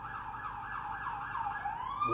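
Emergency vehicle siren sounding, a fast warbling yelp of about five cycles a second that changes about one and a half seconds in to a slow rising wail.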